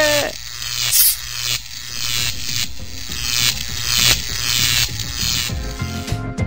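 Electric crackling and buzzing sound effect in uneven repeated pulses: a high-voltage spark discharge zapping a man to wipe his memory. A shouted "Nie!" trails off at the very start, and music tones come in near the end.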